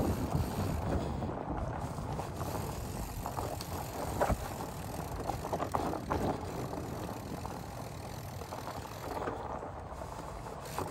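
Fat-bike tyres rolling over a sandy, pine-needle-strewn forest trail: a continuous low rumble, a little louder in the first second, with a few short clicks and crackles along the way.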